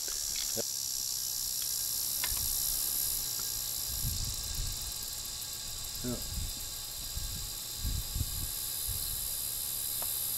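Steady high-pitched insect chirring in a summer field, with a few low rumbles about four to five seconds in and again near eight seconds.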